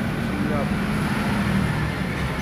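Steady low hum of workshop background noise, with faint voices.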